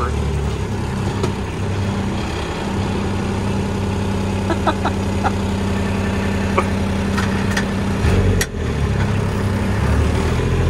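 Kubota engine running steadily while the machine pulls on a cable rigged to a hung-up tree. About eight seconds in, the engine note drops and there is a single sharp click.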